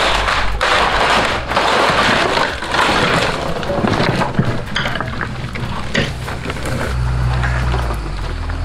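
Wooden boathouse framing cracking and splintering as it is dragged by a winch cable, with a rush of noise and scattered sharp cracks. A skid steer engine runs underneath, louder near the end.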